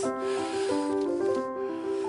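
Steinway grand piano playing a smooth legato phrase of sustained, overlapping notes, shaped as one unbroken line with a single impulse for the whole phrase rather than an accent on each note.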